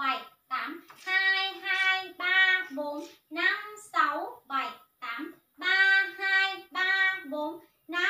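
A woman's high voice chanting dance counts in a drawn-out, sing-song rhythm, about two syllables a second, some notes held longer.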